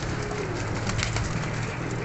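Domestic pigeons cooing softly over a steady low hum.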